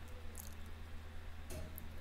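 Quiet room tone with a low steady hum and a few faint clicks, about half a second and a second and a half in.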